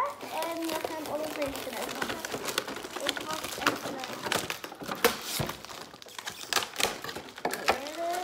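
Cardboard box and plastic packaging tray being handled and unpacked: crinkling and rustling, with many sharp clicks and taps of plastic against cardboard and the tabletop.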